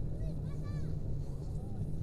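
Faint, repeated yells of a rope jumper swinging below, over a steady low rumble.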